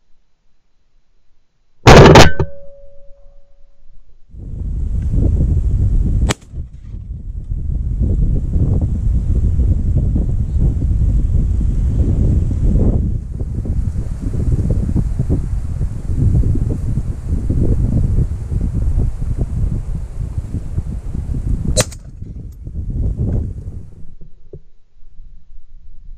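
A single loud shotgun shot about two seconds in, with a brief ringing tail. Then wind buffets the microphone in an uneven low rumble, broken by two sharp clicks or cracks.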